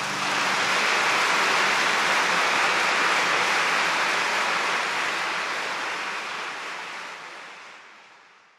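Sea waves washing on a shore: a steady rushing surf that fades out gradually over the last few seconds.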